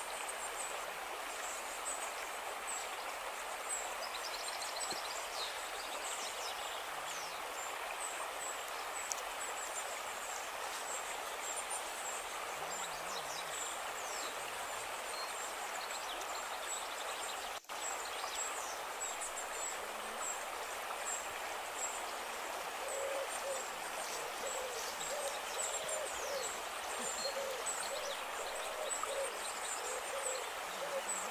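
Forest stream running steadily, with short high bird chirps throughout. From a little past the middle, a bird gives a low hooting call over and over. The sound cuts out for an instant near the middle.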